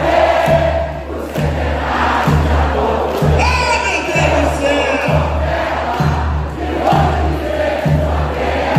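A samba-enredo sung live by a crowd in full voice over samba drumming, with a steady low drum beat a little more often than once a second.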